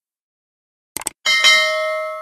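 A short mouse click about a second in, then a single bright bell ding that rings on and slowly fades: the click and notification-bell sound effects of a subscribe-button animation.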